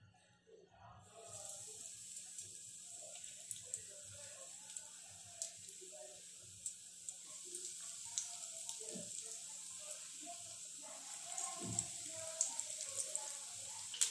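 Breadcrumb-coated half-boiled eggs deep-frying in hot oil in a kadai: a steady sizzle with scattered crackles, starting about a second in as the eggs go into the oil.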